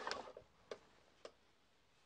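Two faint, short clicks about half a second apart from the jug's factory cap seating and locking into the coupler of a closed-transfer pesticide loading unit.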